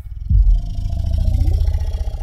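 A loud, deep growling rumble from an unseen monster, part of a horror trailer's sound design. It starts suddenly and pulses steadily, with a faint thin tone held above it.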